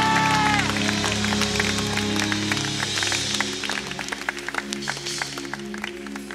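Congregation clapping and cheering over held background music chords, with a drawn-out shout at the start. The clapping thins out and fades toward the end.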